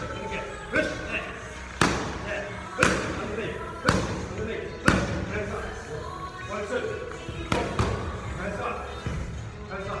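Boxing gloves smacking into focus mitts, sharp hits about once a second; five strong hits in the first half, lighter ones after.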